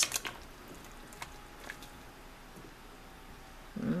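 Wooden spoon stirring chunky vegetable soup in a stockpot: quiet wet stirring with a few light ticks of the spoon against the pot.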